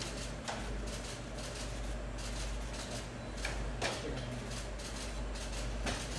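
Irregular clicking of press camera shutters over a steady low hum.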